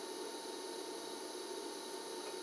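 A DC TIG arc from a small 110-volt inverter welder burning steadily on thin steel plate: a faint, even hiss with a thin steady whine, very quiet.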